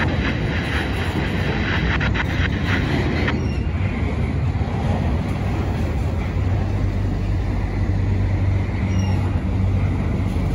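Double-stack intermodal freight train's well cars rolling past close by: a steady rumble of steel wheels on rail, with a brighter metallic rattle and clatter for the first three seconds or so. A steady low hum joins about halfway through.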